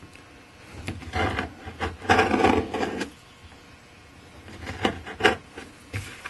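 A modified screwdriver scraping seam putty out of the seams between mahogany planks, in several rasping strokes. The longest and loudest stroke runs from about two to three seconds in, and two short sharp scrapes come near the end.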